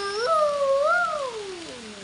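A long drawn-out howl from a single voice. It steps up in pitch just after the start, swells to a peak about a second in, then glides steadily down.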